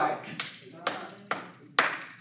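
Slow, even hand claps: four sharp claps about two a second.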